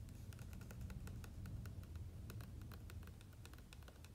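Fingernails and fingertips tapping on a glossy book page: many quick, irregular light taps.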